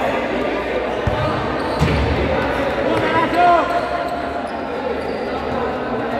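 A futsal ball being kicked and bouncing on a hard court, with sharp thuds about one and two seconds in, over a steady babble of players' voices and a raised shout about three seconds in.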